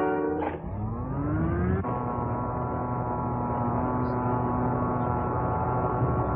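Cartoon sound effect of the magnetic telescope's machinery powering up: a whine rises in pitch for about a second, then settles into a steady humming drone over a low rumble. A held orchestral chord cuts off just before the whine begins.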